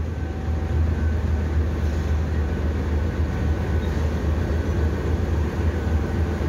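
Pakistan Railways GEU-20 (GE U20C) diesel-electric locomotive standing and idling: its V12 diesel engine gives a steady low rumble.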